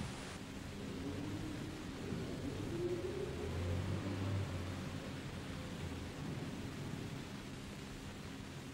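Faint steady hiss with a low hum under it, swelling slightly about three to five seconds in: quiet background ambience with no distinct event.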